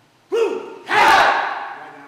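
Kung-fu students shouting together as they drop into a stance and punch in unison. A short call comes first, then a loud group shout with a low thud of feet on the mat, trailing off over about a second.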